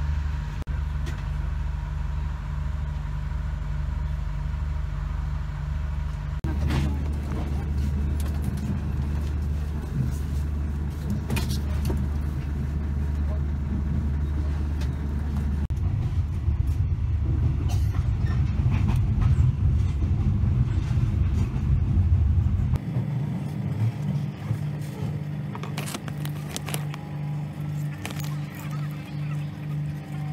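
Steady low rumble of an overnight passenger train running, heard from inside the carriage. Its tone changes abruptly a few times.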